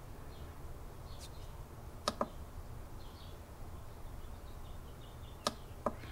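Push buttons on a Tornado30000 battery charger's front panel clicking as they are pressed: a quick double click about two seconds in and two more clicks near the end, over a low steady hum. Faint high chirps sound in the background.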